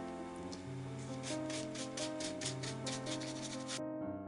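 Paintbrush scrubbing orange paint onto a plastic cup covered in rough tape: quick, even scratchy strokes, about six a second, from about a second in, over background music.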